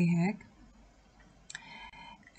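A woman's voice ends a short syllable at the start, followed by a near-quiet pause and a faint, brief sound about a second and a half in.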